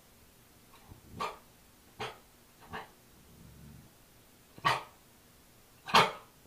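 Bernese mountain dog puppy barking at its own reflection in a mirror: about five short, sharp barks at uneven gaps, the loudest in the second half.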